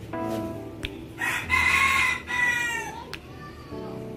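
A loud, drawn-out bird call in two parts, starting about a second in and lasting nearly two seconds, ending with a falling pitch, over guitar background music.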